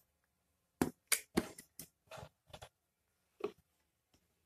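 Non-woven felt damping mat being handled and pressed by hand inside a wooden speaker cabinet: a quick run of short rustling scrapes about a second in, then one more near the end.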